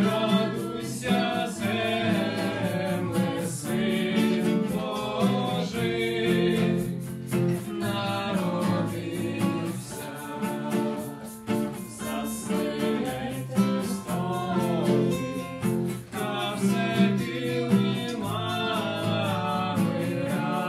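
Mixed male and female voices singing a Ukrainian koliadka (Christmas carol) together, accompanied by two acoustic guitars strummed in a steady rhythm.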